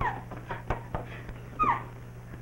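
A woman's short, high yelps, each falling in pitch: one right at the start and another near the end, with a few faint knocks between.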